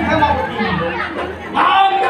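Loud speech over crowd chatter: a voice talking with the murmur of an audience behind it.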